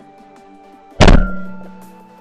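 A single loud shotgun shot about a second in, sudden and then dying away over about a second, over background music.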